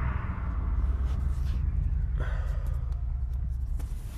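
Low steady rumble of a pickup truck running, heard from inside the cab, with rustling and a few short knocks as the camera is handled and set back in place.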